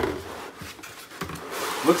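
Molded pulp packaging and cardboard rubbing and scraping as the packed ice cream maker is slid out of its shipping box, with a few light knocks.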